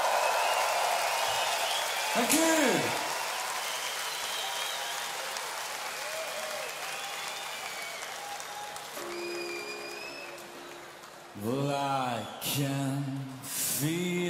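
Festival crowd applauding and cheering with a few whistles, the noise slowly dying away. Near the end a man's voice comes in over the PA.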